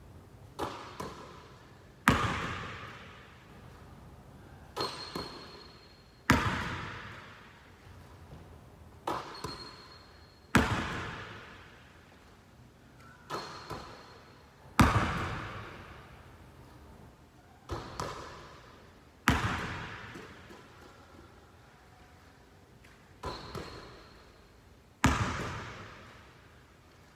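A basketball bouncing on a gym floor in a steady free-throw rhythm, about every four seconds: two light dribbles, then about a second later a much louder bounce that echoes through the hall as the made shot drops to the floor. Six rounds in all.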